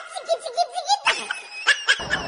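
High-pitched laughter in quick repeated bursts.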